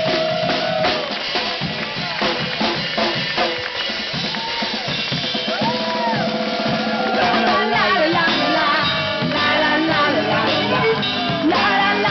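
Live folk street band playing an instrumental passage: accordion and violin over steady drum strokes from a djembe-style drum beaten with a stick. A woman's singing voice comes in near the end.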